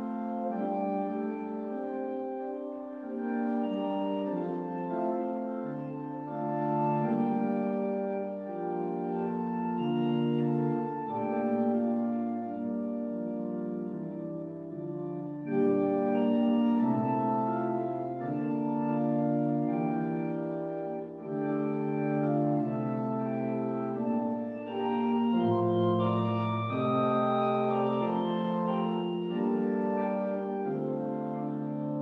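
Organ prelude played in slow, held chords over a stepping bass line, growing louder with a new phrase about halfway through.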